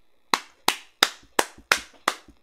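A person clapping hands in an even rhythm, five sharp claps about three a second, starting a moment in.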